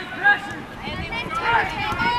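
Several people shouting and calling out during a soccer game, voices overlapping, with one loud shout about a quarter of a second in.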